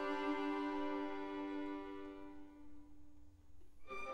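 String orchestra holding a sustained chord that fades away over the second half, almost to nothing. The strings come back in with a new phrase just before the end.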